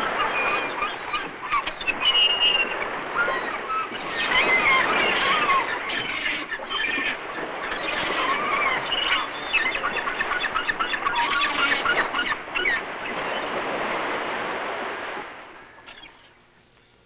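A flock of many birds calling at once, a dense mass of overlapping chirps and squawks, fading out near the end.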